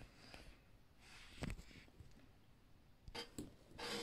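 Faint clicks of plastic littleBits modules being snapped together and pressed onto a perforated mounting board: a single click about one and a half seconds in, then a few more near the end.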